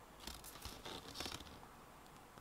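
A card disc sleeve being handled and turned over in the hand: a few soft, brief rustles and scrapes of card, mostly in the first half.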